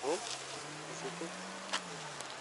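A faint, low, steady hum that drifts slightly up in pitch and back down, with a faint click near the end.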